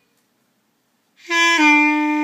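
Beginner playing a clarinet: silence, then about a second in a single held note starts and steps down slightly to a lower note.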